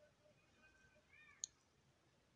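Near silence with one sharp click of knitting needles just past halfway. Faint, brief high-pitched calls come just before it.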